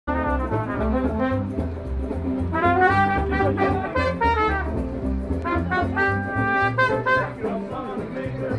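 Street band playing an upbeat tune: brass horns carry the melody with held notes over a steady plucked double bass line.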